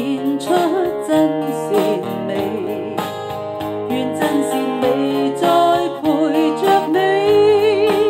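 A woman singing a pop ballad into a microphone, accompanied on guitar. She ends on a long held note with vibrato.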